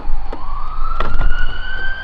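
Emergency vehicle siren wailing, one long tone rising slowly in pitch, which the listeners take for an approaching police car. A couple of short clicks sound about a second in.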